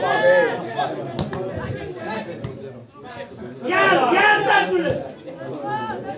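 Spectators' voices close to the microphone, talking and calling out, with a loud shout about four seconds in.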